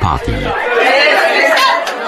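A man's voice for the first half-second, then a group of people talking and calling out over one another.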